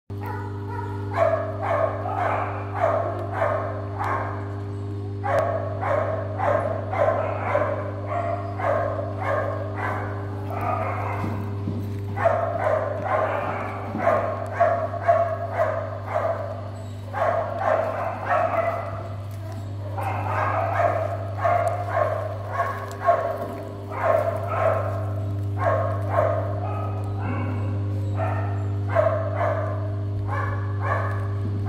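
Dogs barking in rapid runs of several barks a second, broken by short pauses, over a steady low hum.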